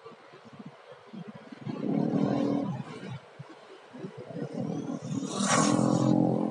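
Electric WLtoys 144001 1:14 RC car on a speed run, passing close about five and a half seconds in as a short, loud high whine that drops in pitch as it goes by. A lower hum of motorbike engines on the road rises and falls twice.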